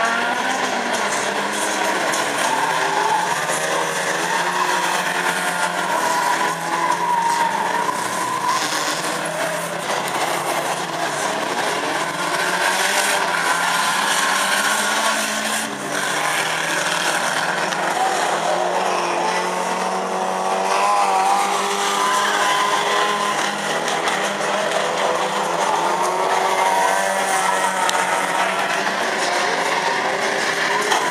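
Several banger-racing cars' engines revving up and down as they race around the track, with tyres squealing and skidding at times.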